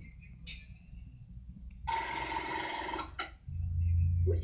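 Cartoon soundtrack played from a TV and picked up off the screen: a short whoosh about half a second in, then about a second of a shrill, buzzing sound from about two seconds in, over a low hum, with a low rumble rising near the end.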